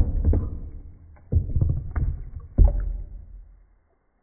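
Water splashing and sloshing around a floating plastic food container, with three heavy thuds about a second and a quarter apart, each trailing off into a swirl of splashing.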